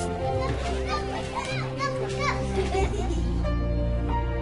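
Children's high voices calling out and playing, rising and falling in pitch from about half a second in until about three seconds in, over background music with sustained notes.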